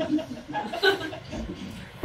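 Audience chuckling, a scattered light laugh that dies away.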